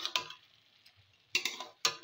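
A metal spatula knocks and scrapes against a metal kadai while stirring cooked leafy greens. Each stroke is a sharp clink with a brief ring: one just after the start and two in quick succession near the end.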